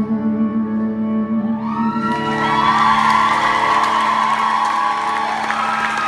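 A live rock band's closing chord rings out on electric guitar and bass. About two seconds in, the audience breaks into cheering, whoops and applause.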